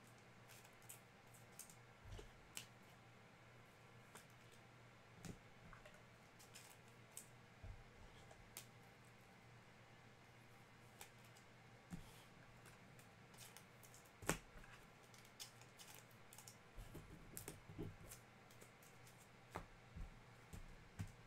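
Near silence: room tone with a low steady hum and faint, scattered clicks and taps, one a little louder about two-thirds of the way through.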